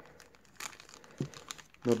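Clear plastic bag crinkling in the hands as a folding pocket knife inside it is handled, in faint irregular crackles with a couple of sharper ticks.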